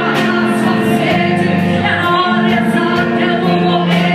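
A woman sings a Portuguese-language gospel song into a microphone, holding long notes over a live band whose drums and cymbals keep a steady beat, all amplified through loudspeakers.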